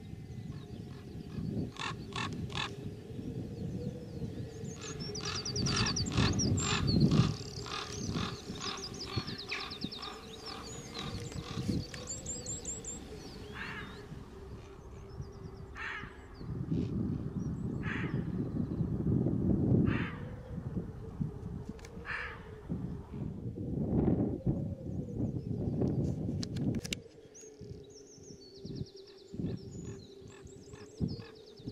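Open-air moorland sound: small birds singing in quick, high, repeated trills, with shorter calls every couple of seconds. Under them runs a low rumbling noise that swells and fades, and a faint steady, slightly wavering tone.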